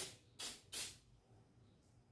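Aerosol can of temporary spray adhesive for fabric giving three short hissing sprays in quick succession, each about a fifth of a second long.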